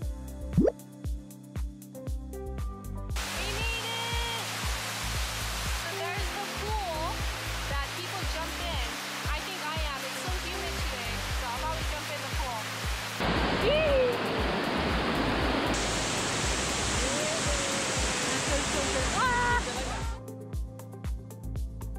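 Background music with a beat for about three seconds, then the steady rush of a waterfall and its stream, swollen by rain, with a person's voice over it.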